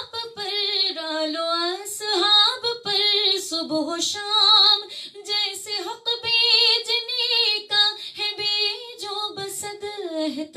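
A woman singing a naat (Urdu devotional poem in praise of the Prophet) solo, with no instrumental accompaniment. Her voice holds long notes that waver and glide in pitch, with short breaks between phrases.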